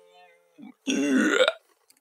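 The last ukulele chord fades away, then about a second in comes a loud burp lasting under a second.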